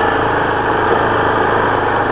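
2018 Yamaha Kodiak 450 ATV's single-cylinder engine running steadily as the quad cruises along a desert dirt track.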